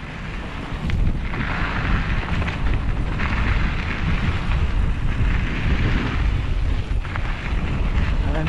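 Wind buffeting the microphone of a mountain bike's action camera while riding downhill, a loud rumble throughout, with the hiss of tyres rolling over a dusty dirt trail that swells in stretches of a second or two.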